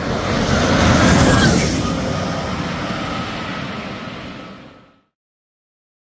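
McMurtry Spéirling electric fan car passing at speed: a rush of air and tyre noise that swells to a peak about a second in, with a faint high whine that drops in pitch as it goes by, then fades away before cutting off at about five seconds.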